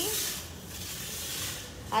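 Disinfectant fogging machine spraying sanitizer mist with a steady hiss.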